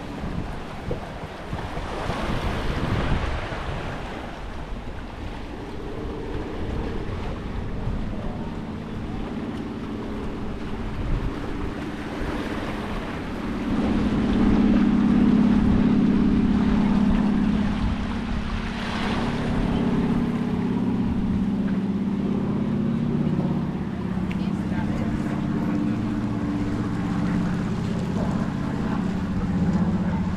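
Seaside ambience: wind buffeting the microphone, small waves washing against rocks, and distant beachgoers' voices. A steady low engine-like drone comes in about six seconds in and is loudest in the middle.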